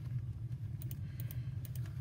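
Scattered light clicks at a computer, over a steady low hum.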